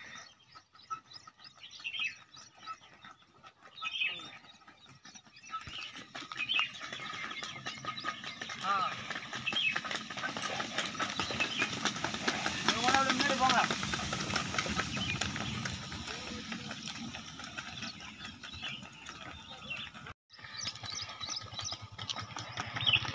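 A pair of bullocks hauling a hay-laden cart along an asphalt road: a stream of hoof clops and the cart rolling. It is faint for the first few seconds and loudest midway, when the cart is alongside.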